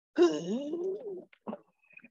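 A person's voice: one drawn-out vocal sound of about a second that falls and then rises in pitch, followed by a short faint sound.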